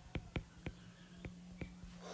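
Stylus tip tapping and ticking on a tablet's glass screen while handwriting: a string of faint, irregular ticks.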